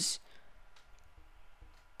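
The tail of a spoken word with a short hiss right at the start, then a pause holding a few faint, scattered clicks over low room noise.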